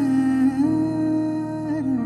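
A male singer humming long, held notes of a slow melody, stepping up in pitch about half a second in and dipping near the end, over soft piano accompaniment.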